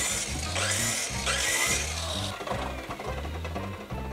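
Chicago Electric miter saw cutting through a wooden board; the cutting noise stops about two seconds in and the saw winds down. Background music plays underneath.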